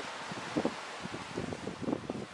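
Wind buffeting the microphone in irregular gusts over a steady hiss of open-air noise, with the loudest bumps about half a second in and again near the end.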